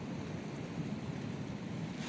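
Steady, even wash of sea surf at a rocky shore, with no distinct events.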